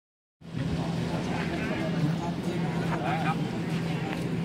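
People talking indistinctly over a steady low mechanical hum, starting a moment in after a brief silence.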